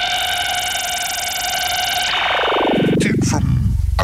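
A break in an electronic music track: one held synthesized note, bright with hiss above it, glides steeply down in pitch from about two seconds in, with a few sharp clicks as it bottoms out.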